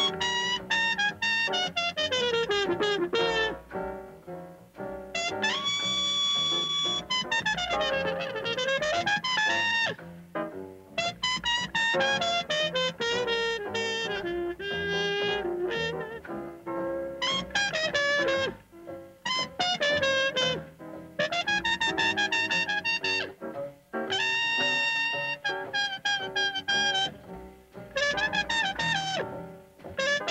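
Hard bop trumpet solo backed by a small jazz group: rapid runs and swooping phrases separated by short breaths, with a long held high note about six seconds in and another around twenty-five seconds.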